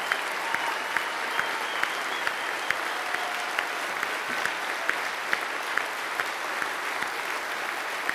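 A large audience applauding steadily, with one close set of hand claps standing out at about two a second over the crowd's clapping.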